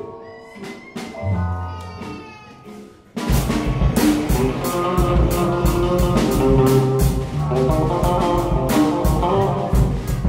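Freely improvised music by electric guitar with effects, Nord keyboard and drum kit. For about three seconds it is sparse, with held and gliding tones, then the full trio comes in suddenly, loud and dense, with steady drum and cymbal hits.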